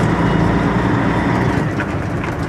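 Diesel engine of a 1990 Peterbilt 379 tri-axle dump truck running steadily under load in second low gear, heard from inside the cab, with about 18 tons of rock on.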